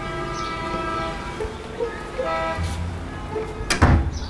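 Background music holding a steady chord, then a few short notes. Just before the end comes a single loud thud of a bedroom door being pushed shut.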